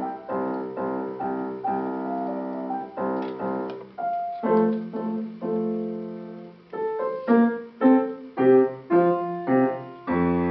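Yamaha grand piano playing a piece in struck chords, one after another, with a run of loud, separately accented chords in the last three seconds.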